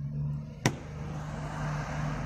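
Rear car door's inside handle clicking once, sharply, as it is pulled with the child lock engaged, over a steady low hum.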